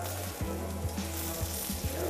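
Stuffed beef roll sizzling as it sears on a hot flat-top griddle, a steady frying hiss.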